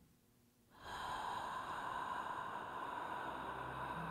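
Near silence, then about a second in a steady airy whoosh, like a long breath or wind, starts and holds at an even level, with low sustained tones coming in near the end.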